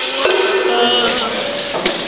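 Sparring swords knocking on shields and armour: a sharp knock just after the start and another near the end, over a held pitched sound.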